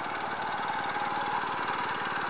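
An engine running steadily at a constant speed, with a fast even pulse.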